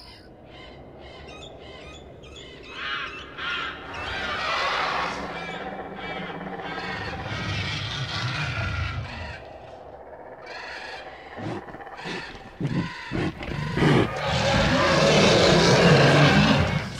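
Prehistoric jungle sound effects: cawing bird calls and animal cries over a natural background. There are a few sharp knocks about three-quarters of the way through, then a louder creature cry in the last couple of seconds.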